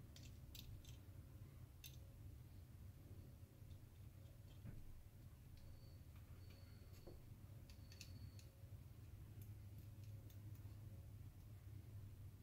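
Near silence with a few faint, scattered clicks as a 3.5-inch hard drive is handled and fitted by hand into a plastic-and-metal server drive tray caddy, over a low steady hum.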